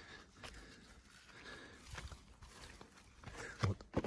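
Faint footsteps and rustling on a grassy path beside dry straw mulch, a few soft scattered scuffs.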